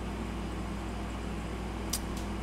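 Steady low hum with faint hiss from the microphone line, with one short click near the end.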